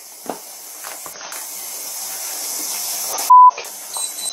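Steady hiss on the bodycam's audio that slowly grows louder, cut by a short, loud single-pitch censor bleep about three seconds in.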